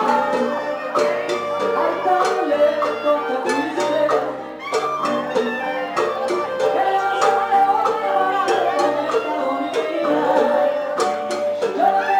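Live small band playing a Latin ballad on acoustic guitar, clarinet and keyboard, over a steady beat of short percussive ticks.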